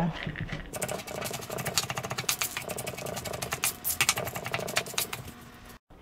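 Chef's knife chopping pecans on a plastic cutting board: rapid, uneven knocks of the blade against the board, several a second. They stop abruptly just before the end.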